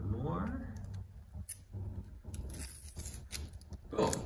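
Tape being peeled off a painted canvas: a scattered series of short crackles and ticks.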